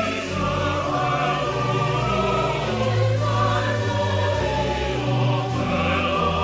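Mixed choir of men and women singing a chorus in full, sustained chords over electronic keyboard accompaniment.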